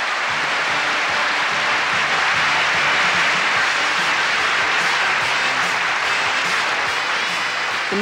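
Large audience applauding steadily, with band music playing underneath.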